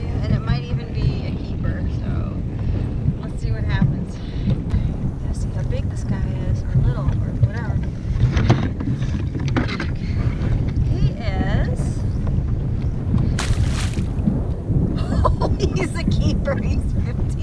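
Wind buffeting the camera microphone, a steady low rumble, with scattered small knocks and rustles of handling in the kayak. A short loud burst of noise comes a little after 13 seconds in.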